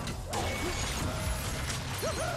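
Action sound effects from an animated cartoon's soundtrack: a dense, continuous crashing rumble and clatter of debris as a large alien body is smashed through a wall.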